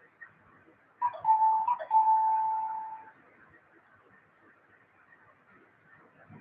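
A loud steady high tone, about two seconds long, starting about a second in, briefly broken partway and then fading out.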